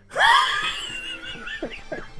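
A man's sudden high-pitched cry of shock that trails off into wheezing laughter, breaking into short bursts of laughing in the second half.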